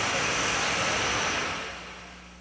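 Outdoor traffic noise, a steady rush of passing vehicles that fades away near the end.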